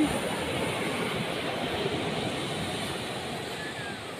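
Ocean surf washing onto a beach, a steady rush that slowly fades, with a faint short chirp near the end.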